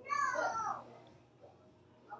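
A single short call that falls in pitch, lasting well under a second at the start, followed by faint room noise.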